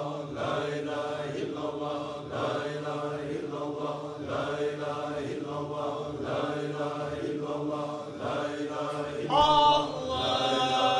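Sufi dervishes chanting zikr together: repeated phrases in a pulsing rhythm over a steady low line of voices. Near the end a single loud, high voice rises above the chorus.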